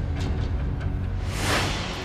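Dramatic background score with a heavy low bass. About a second in, a whoosh swells up and fades away by the end, a transition effect at a scene cut.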